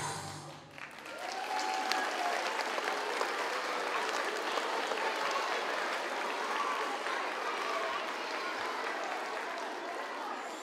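Audience applauding, the clapping swelling about a second in and then holding steady, with a few voices calling out over it.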